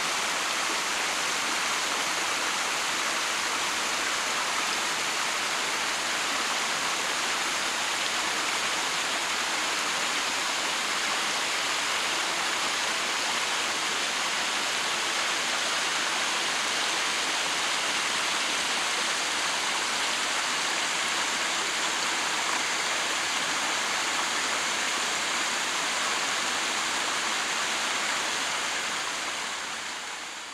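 A small stream splashing over flat rock ledges into a pool: a steady rush of running water that fades out near the end.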